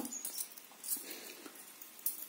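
Faint clinking and rustling of gold-plated necklaces being handled, with a slightly louder stir about a second in.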